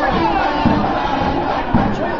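A marching band's many voices shouting together over low drum beats that fall about once a second.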